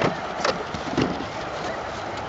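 Steady outdoor noise with three soft thumps about half a second apart in the first second, and faint distant children's voices calling.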